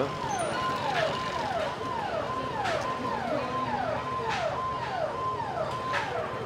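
Police vehicle siren sounding a repeating electronic tone that holds high and then drops, a little under twice a second, over crowd and street noise.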